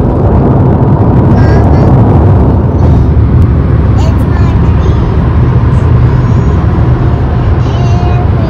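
Loud, steady road and wind rumble of a car travelling at highway speed, heard from inside the cabin.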